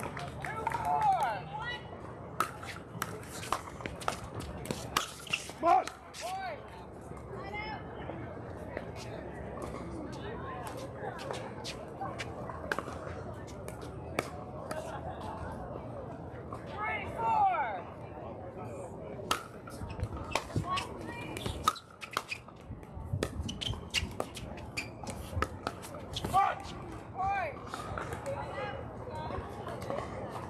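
Pickleball paddles striking the hard plastic ball, many sharp irregular pops from this and neighbouring courts, with voices and shouts of players in the background.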